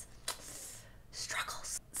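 A woman's quiet breathy, whispered vocal sounds. There is a faint hiss early on, then a louder breathy burst a little past the middle.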